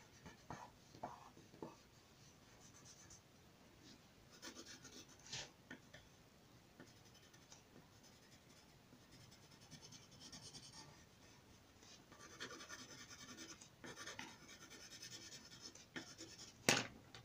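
Faint scratching of a graphite pencil shading on paper, in several bursts of quick strokes.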